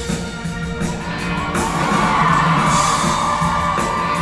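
Live pit band playing up-tempo rock and roll with drums. About a second and a half in, a long high note is held over the band.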